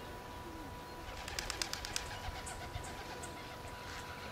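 Outdoor ambience with birds calling: low, curving calls early on and short, high chirps in the second half. A quick run of sharp clicks comes about a second and a half in.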